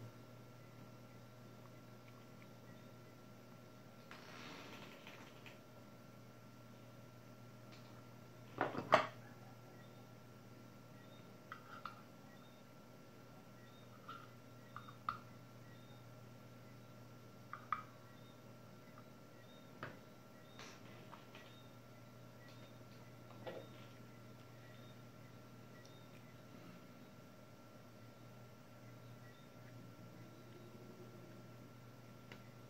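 Quiet workbench room tone with a steady low hum, broken by a few small clicks and taps of objects being handled on the bench, and one sharper knock about nine seconds in.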